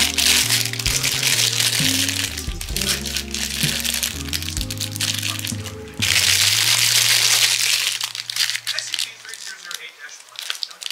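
Background music, with a thin plastic bag crinkling as it is handled and torn open; the crinkling is loudest from about six to eight seconds in. The music fades out near the end.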